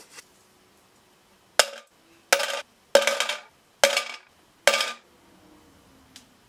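Five Canadian nickels dropped one at a time into a clear plastic jar, each landing with a sharp clatter and a short rattle, a little under a second apart.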